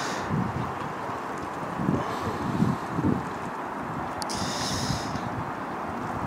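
Wind blowing across the camera microphone: a steady rushing with a few brief louder gusts.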